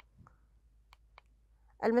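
Four faint, sharp clicks of a computer mouse in two quick pairs about a second apart, advancing a presentation slide. Speech begins just at the end.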